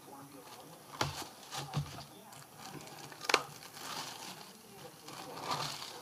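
Plastic film cover being peeled off a microwaved frozen meal tray: soft crinkling broken by a few sharp crackles.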